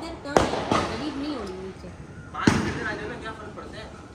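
Fireworks going off: two sharp bangs close together about a third of a second in, then a louder bang with a trailing rumble about two and a half seconds in.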